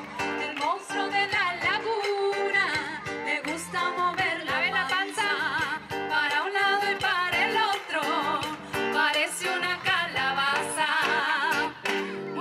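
A woman singing a children's dance song into a microphone over music with guitar, her voice wavering in a strong vibrato.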